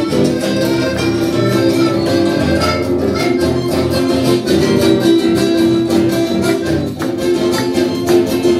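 Live chamamé band playing a dance tune: accordion holding sustained chords over strummed acoustic guitars in a steady rhythm.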